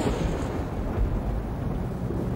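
A loud, deep, steady rumble, the long roll that follows a heavy boom, with nearly all its weight in the low notes.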